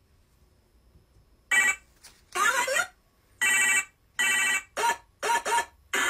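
Electronic beeping: a run of about seven short tones with gaps between them, starting about a second and a half in after near silence.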